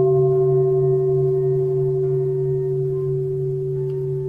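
A bowl-type bell, struck just before, rings on as a steady tone that slowly fades, over a low steady hum.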